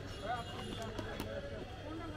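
Men's voices chattering in a crowd, with two sharp clicks near the middle.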